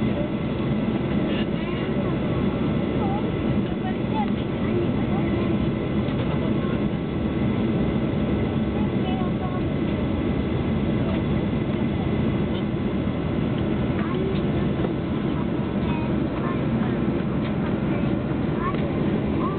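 Cabin noise inside a Boeing 737-800 on the ground: the steady drone of its CFM56 engines and airframe as the plane taxis, holding an even level throughout, with faint voices of passengers under it.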